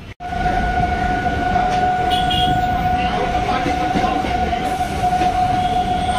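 Passenger train running: a loud steady rumble with a continuous high whine held throughout.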